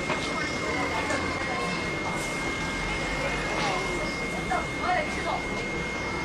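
Busy street-market ambience: scattered distant voices of vendors and shoppers over a low vehicle rumble, with a thin steady high-pitched tone.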